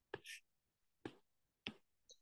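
A few faint, sharp clicks spread over two seconds, with a short soft hiss just after the first: a stylus tapping on a tablet's glass screen while choosing a pen tool.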